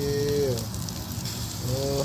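Skewered sausage links sizzling and crackling on an electric grill. A man makes a short wordless vocal sound at the start and another near the end.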